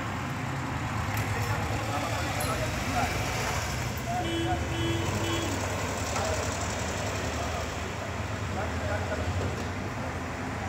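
Outdoor street ambience: a steady low rumble with faint, indistinct voices, and three short tones in a row about four seconds in.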